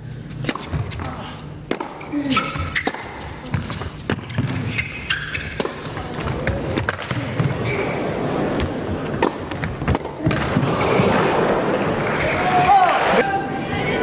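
Tennis rally on an indoor court: sharp cracks of rackets striking the ball, then crowd applause and cheering swelling from about ten seconds in.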